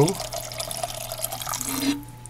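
Water pouring steadily into a roasting pan around a pork roast and shredded cabbage, stopping near the end.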